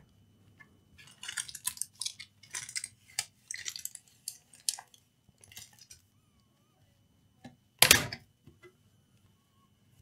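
Plastic bottom cover of an HP laptop being prised off its clips by hand: a scattered run of small clicks and scrapes, then one louder clack about eight seconds in.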